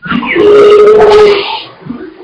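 A man's voice holding one drawn-out, steady-pitched vowel for about a second, then trailing off into quieter talk.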